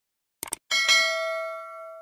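A quick double mouse-click sound effect, then a bright notification-bell ding that rings out and fades over about a second and a half: the stock sound of clicking a subscribe animation's notification bell.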